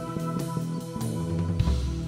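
A live band playing an instrumental passage, with quick plucked-string notes over bass and drums and a deep bass note near the end.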